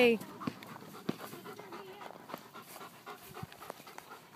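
A German Shepherd dog panting, with a few scattered light clicks and knocks.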